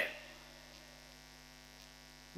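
Faint steady electrical hum from the microphone and sound system, with the tail of a man's voice dying away at the very start.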